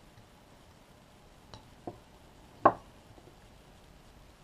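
Carving knife cutting into a small wooden figure: three short sharp clicks of the blade through the wood, the last much the loudest.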